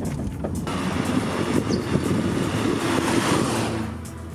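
Alfa Romeo SZ being driven, its 3.0-litre Busso V6 running with road and wind noise; the sound swells from about a second in and stops suddenly at the end.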